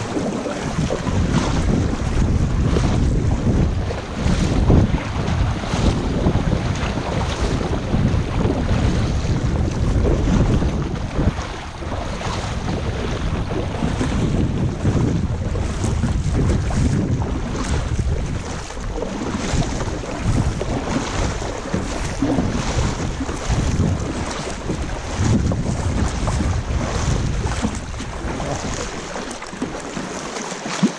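Loud wind buffeting the microphone, with sea water lapping and splashing as a kayak paddle dips in stroke after stroke.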